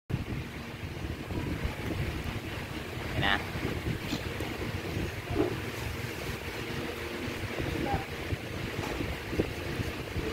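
Wind buffeting the microphone as a low, steady rumble, with a faint steady hum under it and a short chirp about three seconds in.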